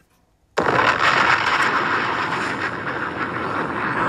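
A pre-recorded sound bite played back: after a moment of silence, a loud, dense rushing noise starts suddenly about half a second in and carries on steadily.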